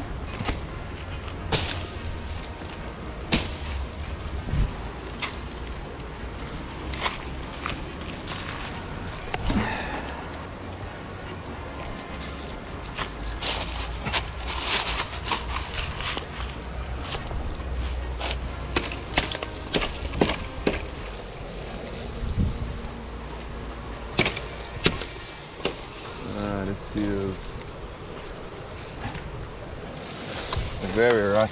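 Machete strokes chopping and snapping branches for firewood: sharp, irregular knocks and cracks, with brush rustling and a low rumble of wind on the microphone.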